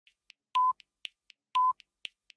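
Electronic countdown-clock sound effect: light ticks about four times a second, with a short steady beep once a second, twice in all, marking the last seconds to midnight.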